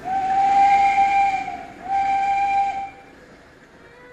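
Steam locomotive whistle blown twice over a hiss of steam: a long blast, a short break, then a shorter blast.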